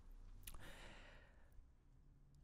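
Near silence, with a man's faint breath close to the microphone starting about half a second in and fading out.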